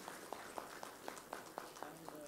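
Faint, scattered applause: separate hand claps several times a second, thin and uneven.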